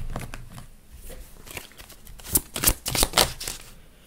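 Deck of oracle message cards being shuffled by hand: a run of quick papery clicks and flicks, loudest and densest in the second half.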